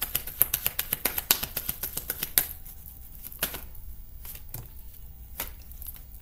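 A tarot deck shuffled by hand: a fast run of crisp card clicks for about two and a half seconds, then a few single clicks about a second apart as the cards are handled more slowly.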